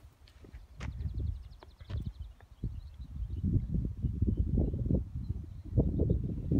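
Wind buffeting the microphone in uneven gusts, stronger from about three seconds in. Early on a faint, rapid high trill runs for about a second, with a few light clicks.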